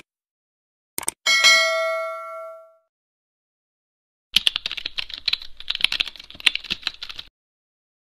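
Edited intro sound effects: a click and a bell-like ding that rings out for about a second and a half, then, after a pause, about three seconds of rapid irregular clicking like keyboard typing, with dead silence between them.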